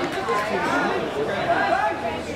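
Several people's voices talking and calling over one another, with no clear words.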